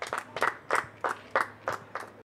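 Scattered applause from a small audience at the end of a talk: separate handclaps heard one by one rather than a dense wash.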